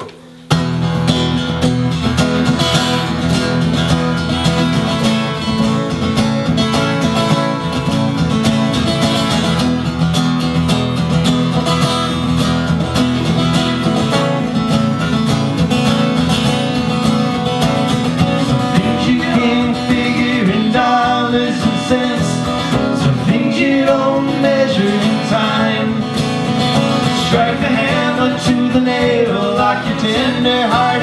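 Two acoustic guitars strummed and picked together, playing a live folk song's introduction. About two-thirds of the way through, a man's voice begins singing over them.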